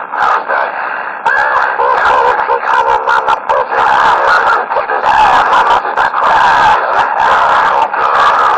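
Garbled, overlapping shouting voices coming over a two-way radio's speaker, narrow and distorted so that no clear words come through; a little quieter for about the first second.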